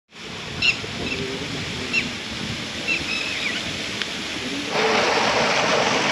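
Steady rain hiss with a bird calling three times; the rain noise grows louder near the end.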